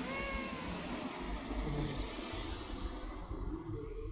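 A tabby-and-white cat gives one short meow right at the start, falling slightly in pitch. Low rumbling noise follows.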